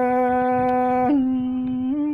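A Tai (Thái) folk singer holding one long sung vowel, unaccompanied; the pitch steps up a little about halfway through.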